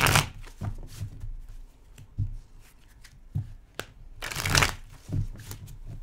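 A tarot deck being shuffled by hand over a table: two longer riffles, one at the start and one about four and a half seconds in, with soft knocks of the cards in between.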